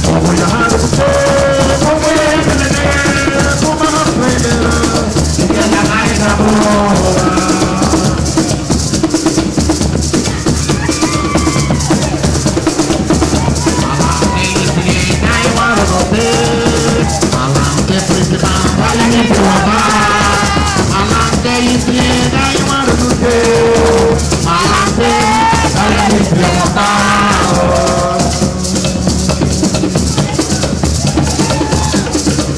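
Live Garifuna drum music: maracas shaken in a fast, steady rhythm over hand drums, with a man's voice singing over them.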